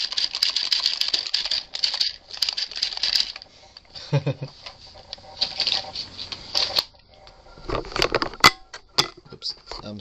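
Small electric motor and drivetrain of a toy RC buggy whirring in bursts as the newly paired controller drives it, its wheels spinning: three spurts, two close together at the start and one about five seconds in. Sharp clicks and knocks of handling follow about eight seconds in.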